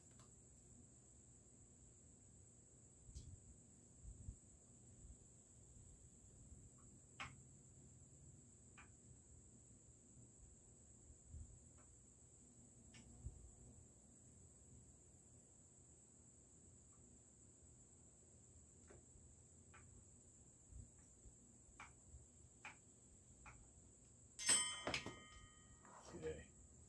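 Near silence with faint, scattered small clicks of a screwdriver working the screws of a Marlin 1894C rifle's receiver, then a short burst of louder metallic clinking and rattling near the end as the rifle's parts are handled.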